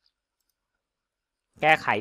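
Near silence with one or two very faint clicks, then a man's voice starts speaking about a second and a half in.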